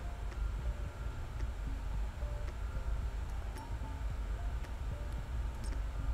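Steady low room hum with a few faint light ticks and rustles as hands fold and press the edge of sequined fabric.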